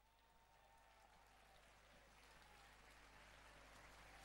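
Near silence, with faint crowd noise from a large open-air audience slowly growing louder.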